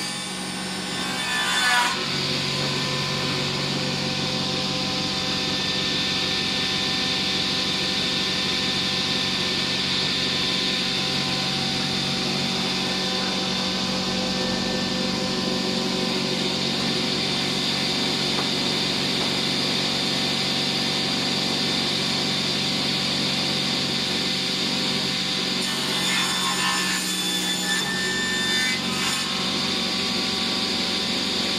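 Esse-Effe sliding-table panel saw ripping a paulownia log slab lengthwise with its circular blade. The blade takes the wood about two seconds in with a jump in loudness, cuts steadily for over twenty seconds, then runs more unevenly as it works out through the end of the slab near the end.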